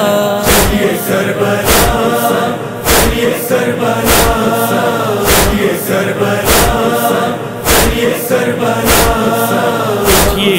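A noha lament: voices chanting together without instruments over a regular percussive beat, with a strong stroke about every 1.2 seconds and lighter strokes between them.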